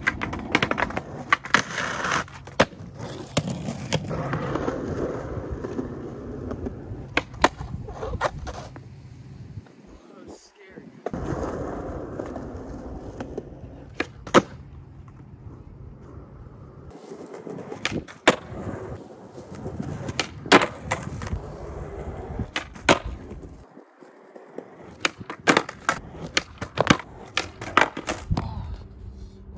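Skateboard wheels rolling on concrete, broken by many sharp pops of the tail and cracks of the board landing and hitting a concrete ledge during repeated ollie attempts. The rolling stops briefly twice.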